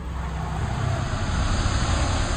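Cinematic transition sound effect under a section title: a deep rumble with a rushing hiss on top, held steady.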